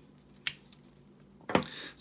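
Two sharp clicks of small plastic Apple power adapters, a 5 W iPhone cube and a 12 W iPad charger, put down on a hard surface about a second apart. The first is the crisper and louder; the second has a duller knock.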